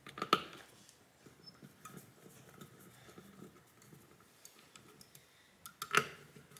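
Faint ticks and scratches of small screws being handled and driven into a graphics card's cooler bracket with a #000 Phillips precision screwdriver, with a sharper click about a third of a second in and a few more clicks near the end.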